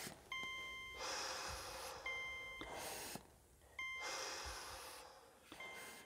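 Hospital patient monitor beeping four times, about one short beep every 1.8 seconds, over slow, heavy breathing.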